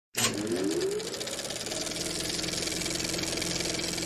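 A small machine starts up with a rising whine, then runs on with a fast, even mechanical clatter over a steady hum.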